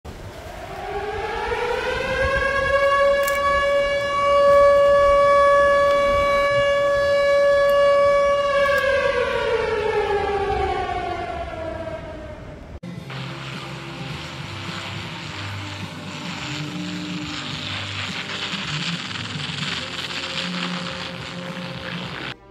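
Air-raid siren winding up to a steady high wail, holding it for several seconds, then winding down in pitch. About halfway through it cuts abruptly to a steady rushing noise with a low drone under it.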